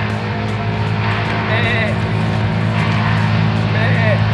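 Steady drone of an engine running in the background, with a goat bleating in short wavering calls twice, about a second and a half in and again near the end.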